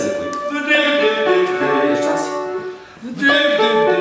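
Singing of held notes with piano accompaniment, as in a singing-lesson exercise; it breaks off briefly about three seconds in and then starts again.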